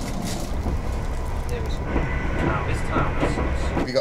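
Passenger train running at speed, heard from inside the carriage as a steady low rumble, which cuts off abruptly just before the end.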